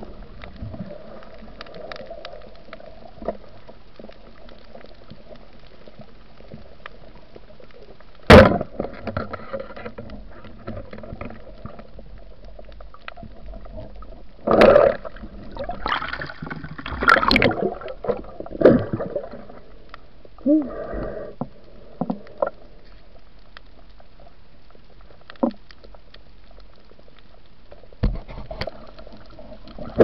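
Underwater noise picked up through a dive camera housing: a steady low murmur, one very loud sharp knock about eight seconds in, then a cluster of bubbling, scraping bursts in the middle as a fish is handled in churned water, with a few scattered clicks later.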